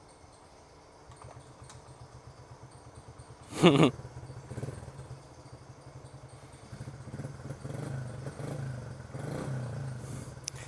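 Small Honda pit bike's engine starting up about a second in and idling with a fast, even putter, growing a little louder from about seven seconds in.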